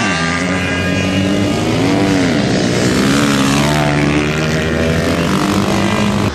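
Several small dirt bike engines running hard on a flat track, their pitch rising and falling with throttle and shifts as the bikes race around.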